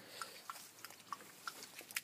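Cairn terrier lapping water from a plastic kiddie pool: faint, quick wet laps about three a second.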